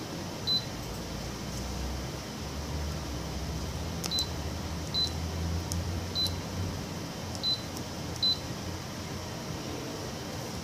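The touch panel of a Canon imageRUNNER ADVANCE C2220i copier beeps: a short, high beep confirms each stylus press on a screen button. There are six beeps at uneven intervals, one near the start and the rest from about four seconds in, over a low hum.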